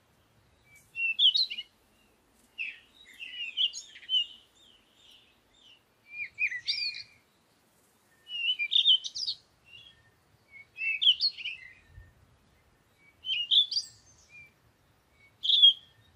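A songbird singing short phrases of quick chirps and trills, about seven phrases, one every two to three seconds, with quiet gaps between.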